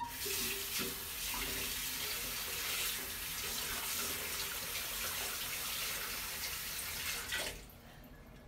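Bathroom sink tap running steadily while the mouth is rinsed after brushing, then shut off near the end.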